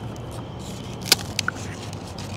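Low steady background hum with a sharp click just after a second in and a fainter tick soon after, as crispy fried chicken skin is handled on a plate.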